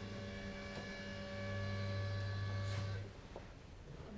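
Steady electrical hum, a low buzz with a string of higher tones above it. It grows a little louder about a second and a half in and cuts off suddenly about three seconds in.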